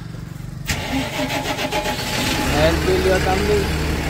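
A truck's diesel engine being started: a click, then about two seconds of rapid cranking before it catches and settles into a steady idle.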